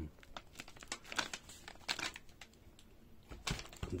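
Crinkling and rustling of fireworks packaging being handled, as a run of irregular small clicks, with a couple of dull knocks near the end.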